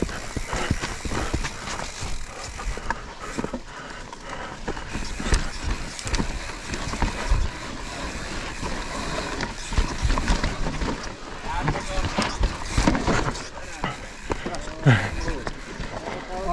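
Mountain bike ridden fast down a rough, muddy forest trail: tyres rolling over dirt and roots, with the bike rattling and clattering over the bumps throughout. The rider makes a short vocal sound near the end.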